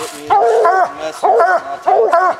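Coonhound tree-barking at the base of a tree, short arched barks coming several a second in quick bouts: a hound bayed up on a treed raccoon.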